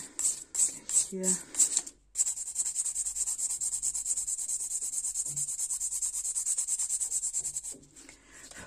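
Hand nail file rubbing over a long artificial nail: slower strokes at first, about two and a half a second, then, after a short pause about two seconds in, rapid even back-and-forth filing that stops just before the end.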